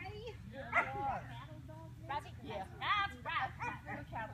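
A dog barking on an agility run, a string of short, high barks, the loudest about a second in and another cluster around the three-second mark.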